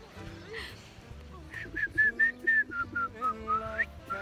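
A person whistling a tune by mouth: about ten short whistled notes starting about a second and a half in, stepping down in pitch and ending with an upward slide.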